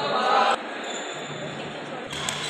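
A short call from a voice in a large, echoing indoor hall, cut off abruptly about half a second in, followed by the hall's steady background noise while play pauses between badminton rallies.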